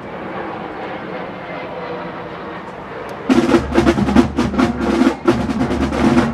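Marching percussion of a drum corps striking up a little over three seconds in, a rapid, rhythmic run of drum strokes that cuts in abruptly over quieter background sound.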